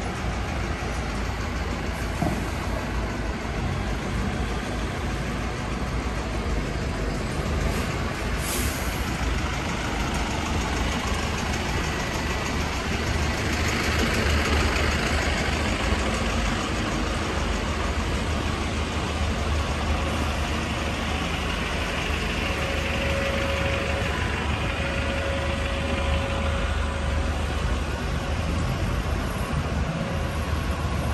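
Street traffic running steadily, with a double-decker bus engine close by giving a low rumble. A hiss swells for a couple of seconds about halfway through.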